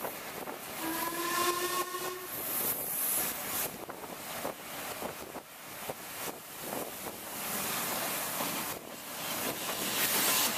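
Steam locomotive whistle, from a Black 5 4-6-0, sounding once for about a second and a half starting about a second in, at the whistle board. It is heard from a coach behind the engine, over the steady rush and knocking of the running train and wind on the microphone.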